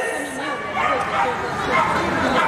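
Dog barking, with a person talking over it.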